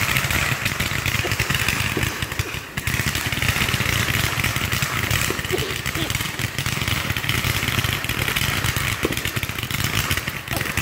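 Fireworks firing at close range from the ground: a continuous barrage of rapid launches and crackling, with a brief lull about two and a half seconds in.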